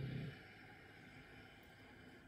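A man's slow, soft exhale after a held breath, a faint breathy hiss that fades away over about a second and a half.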